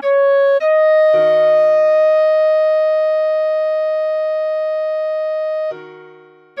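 A clarinet plays a short note, then steps up to one long held note lasting about five seconds. About a second in, a piano chord sounds underneath it and slowly dies away. Both stop near the end.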